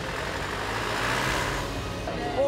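Street traffic noise: a passing vehicle's rush swells about a second in and fades again.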